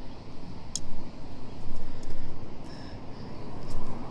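Road traffic from a nearby busy road, a low rumble that swells and fades as vehicles pass, with one short sharp click just under a second in.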